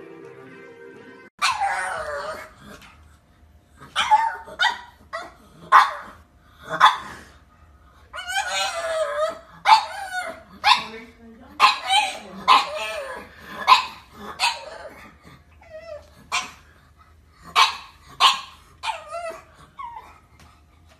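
Brief music, then, after a cut about a second and a half in, a pug barking over and over: about twenty loud, short barks, a few of them drawn out and wavering.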